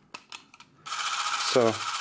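A few light mechanical clicks, then about a second in the Braun 400 Super 8 camera's film drive motor starts up and runs with a steady whir. The camera is being run through its frame rates.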